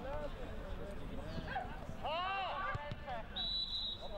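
Footballers shouting to each other across the pitch, with loud calls about two seconds in, then a referee's whistle blown once for about half a second near the end.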